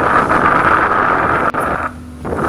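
Wind buffeting the microphone: a loud, steady rushing noise that cuts out suddenly near the end.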